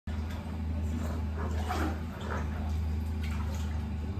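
Hydrotherapy underwater treadmill running with a steady low hum, water sloshing in the tank as a dog walks through it.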